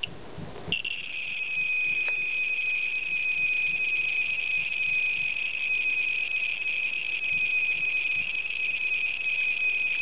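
Gamma Scout Geiger counter's piezo sounder, switched on as a clicker, going from near quiet into one continuous high-pitched tone a little under a second in. It holds steady from there on. The tone is the sign of a soaring count rate as the tube is held to an alpha source, with the reading climbing into the thousands of microsieverts per hour.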